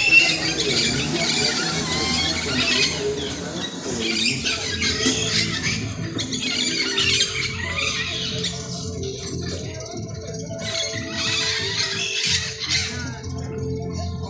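A flock of parakeets screeching and chattering in a tree, in waves of shrill calls, over music playing in the background.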